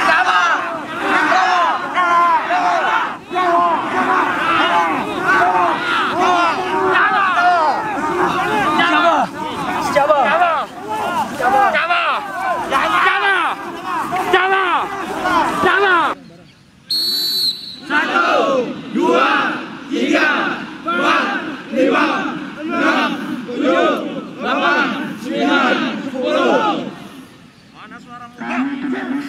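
A large group of army recruits shouting together without a break. After a short pause, a brief whistle blast sounds, then the recruits shout in a steady cadence, a little faster than once a second.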